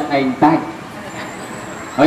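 A man preaching into a microphone, his voice breaking off about half a second in, followed by a pause of low, steady background noise.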